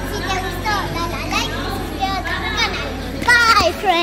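Two young girls' high voices talking and calling out, with a loud shout a little over three seconds in, over a steady low hum.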